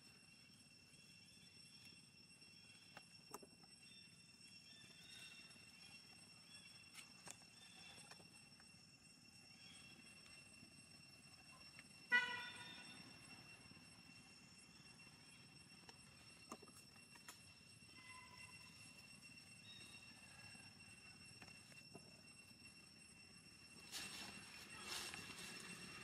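Near silence with a faint, steady high whine. About halfway through comes one short, sharp pitched call from a macaque, squealing once, with fainter squeaks later.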